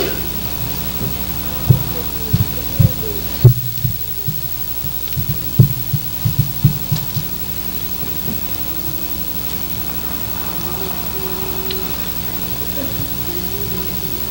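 Steady electrical hum from a sound system, with a run of irregular low thumps from about two to seven seconds in, typical of a handheld microphone being handled.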